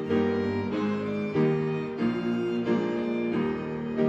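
Live instrumental music from a small group of church musicians: sustained notes moving from chord to chord at a slow, even pace, about every two-thirds of a second.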